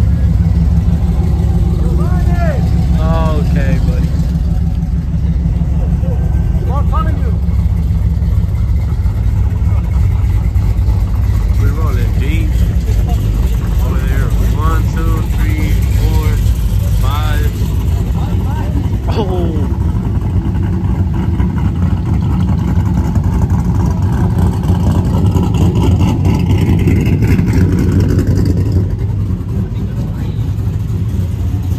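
Pickup truck engines running at close range with a loud, steady deep rumble. People's shouts and whoops come over it in several short bursts in the first two-thirds.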